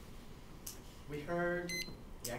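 A man's voice holding one steady note for under a second, starting about a second in. Near the end a short, high electronic beep sounds over it.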